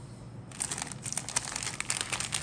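Clear plastic bag around model-kit sprues crinkling as the sprues are handled. It starts about half a second in with a quick, irregular run of crackles.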